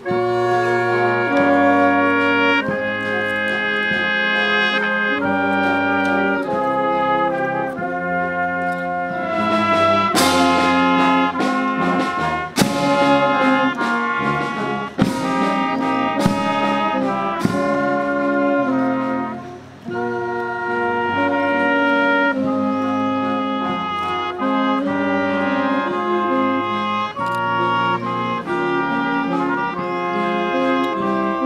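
Brass band playing slow music in long held chords, with a few sharp percussive hits about halfway through.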